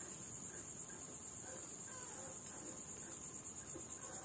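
Night insects trilling in one steady, unbroken high-pitched chorus, like crickets.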